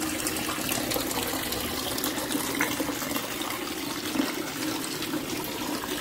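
Water pouring and splashing steadily into a garden fish pond from a pipe outlet, with a faint steady hum underneath.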